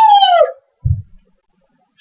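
A boy's loud, high-pitched yell of a name, falling in pitch over about half a second, followed by a single low thump about a second in.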